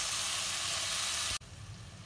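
Chicken pieces in masala sizzling as they fry in a pot, the sizzle stopping suddenly about one and a half seconds in.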